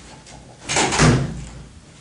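A door shutting: one sudden, loud thud about three quarters of a second in, dying away within half a second.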